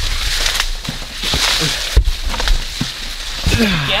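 Dry corn leaves rustling and crackling as someone pushes through a standing cornfield, the leaves brushing past the microphone, over a low rumble.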